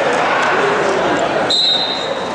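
Referee's whistle blown once near the end, a short steady high tone lasting about half a second, starting the wrestling bout from the neutral position. Voices in the gym before it.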